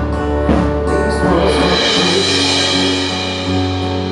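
Live band playing an instrumental passage of a pop ballad on keyboard, bass guitar and acoustic guitar, with a drum hit about half a second in; the deep bass note drops away about halfway through.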